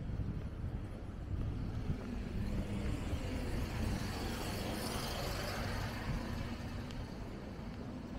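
A motor vehicle passing on the road, building to its loudest about five seconds in and then fading, over a steady low traffic rumble.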